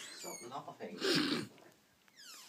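A person laughing in short, squeaky, wheezy bursts: a high-pitched squeal just after the start and a louder burst of laughter about a second in.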